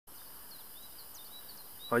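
Faint open-air background hiss with a small bird giving a series of short, high chirps.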